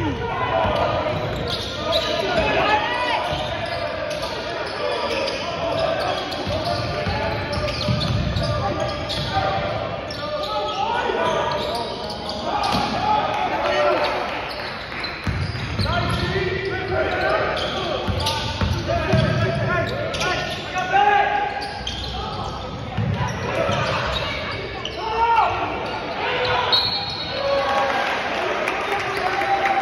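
Basketball being dribbled on a hardwood gym floor, with the chatter of many spectators' voices echoing in a large gymnasium. A short referee's whistle sounds near the end.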